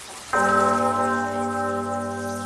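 A church bell struck once, about a third of a second in, ringing on with many overtones and a slow fade as the previous stroke dies away, over a steady high hiss.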